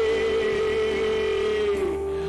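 A man holding one long sung note into a microphone in a Tamil Christian worship song, over backing music; the note dips in pitch near the end.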